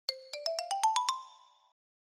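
Short logo jingle: eight quick, bright, bell-like notes climbing a scale of about an octave, then ringing out and fading within a second and a half.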